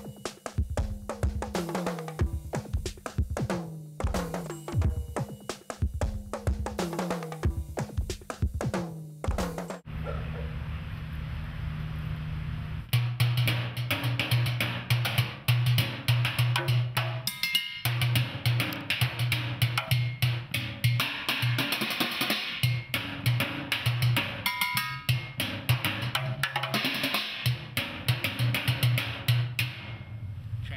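Drumsticks beating galvanized steel trash cans, trash-can lids and a plastic water-cooler jug in a fast, rhythmic percussion solo. The playing changes about ten seconds in, and from about thirteen seconds the strikes come in a dense flurry over a low, steady tone.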